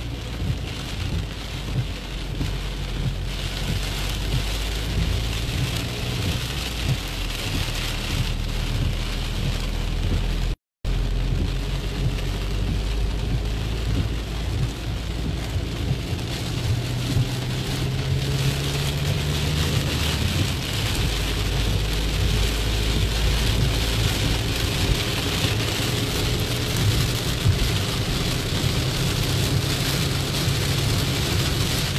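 Heavy rain falling on a moving car's windshield and roof, heard from inside the cabin, over the low steady hum of the car driving. The sound cuts out completely for a moment about ten seconds in.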